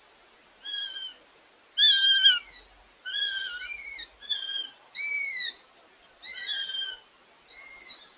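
Northern goshawk calling: a run of about eight high, thin, whistled cries, roughly one a second, each falling away at the end, the loudest about two and five seconds in.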